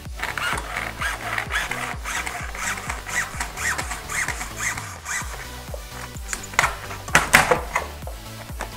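Hacksaw cutting through a thin plastic shower-mirror sheet in repeated back-and-forth strokes. Near the end come a few sharp cracks as the brittle plastic splits along the cut. Background music plays throughout.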